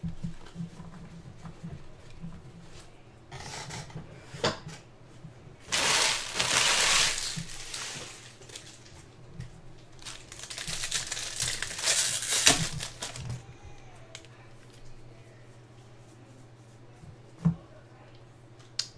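Foil trading-card pack wrappers being torn open and crinkled by hand, with two louder bouts of crackling, one about six seconds in and another past the middle, and softer card handling between.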